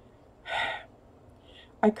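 A woman takes one audible breath in through her mouth, lasting about half a second, during a pause in her talking; she starts speaking again near the end.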